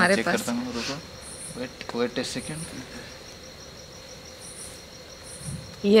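Crickets chirping at night in a steady, evenly pulsed high trill, with short higher-pitched insect calls coming and going over it.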